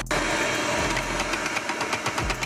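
Electric food processor running, its motor and blade chopping spinach dip ingredients in a steady whir.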